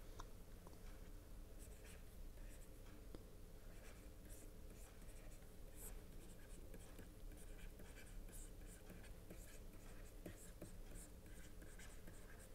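Faint scratching and tapping of a stylus writing on a pen tablet, in short irregular strokes, over a low steady hum.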